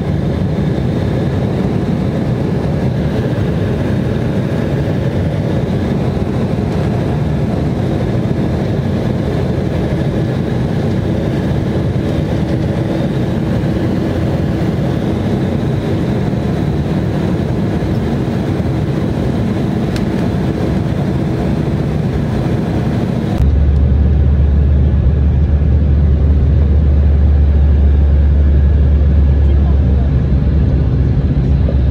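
Airliner cabin noise at a window seat during descent: a steady rumble of engines and rushing air. About 23 seconds in it switches abruptly to a louder, deeper rumble.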